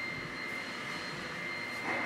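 Steady background hiss of an indoor space, with a faint constant high-pitched whine running underneath.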